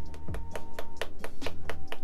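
Makeup brush tapped rapidly and repeatedly to knock excess blush powder off its bristles, a quick even run of about seven or eight sharp taps a second. Faint background music runs underneath.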